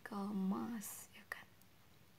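A woman humming wordlessly on a steady low note, which stops a little under a second in. A short breathy hiss follows, then a few faint clicks.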